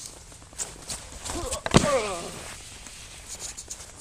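Quick footsteps on snow, then a single loud thud a little under halfway through as a grip-taped snowskate deck is dropped onto the snow and jumped onto, with a short vocal exclamation around it.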